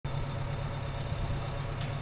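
Truck engine idling with a steady low hum, with one brief click near the end.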